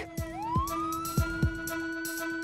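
A siren wailing. Its pitch dips, then rises steeply about a quarter second in and holds high. Underneath runs background music with a steady drum beat.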